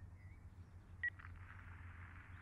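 A single short mobile-phone keypad beep about a second in, as the key is pressed to accept the call, followed by faint steady phone-line hiss.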